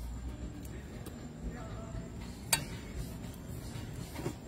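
A metal serving spoon scooping curry from foil trays onto a banana leaf, with one sharp clink about two and a half seconds in.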